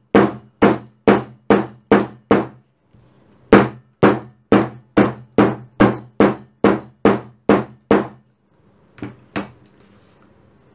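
Steel shoemaker's hammer striking an opened leather back seam on a cutting mat to flatten it: a run of about six blows at roughly two a second, a short pause, then about eleven more, and two lighter taps near the end.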